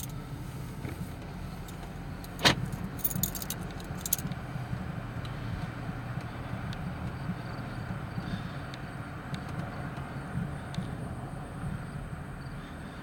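Car engine and road noise heard from inside the cabin while driving slowly, a steady low hum. One sharp click about two seconds in is the loudest sound, followed by a few lighter high clicks.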